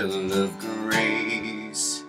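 Acoustic guitar strummed in a slow country-ballad rhythm, chords ringing between the strokes.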